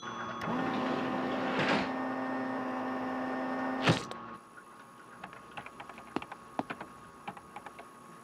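Cartoon sound effect of a medical scanner running: a steady electronic hum with a whoosh that swells about two seconds in, cut off by a click about four seconds in. Faint scattered clicks follow.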